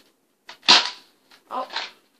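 Nerf Mega blaster firing one Mega dart: a faint click, then a single loud, sharp pop that fades quickly.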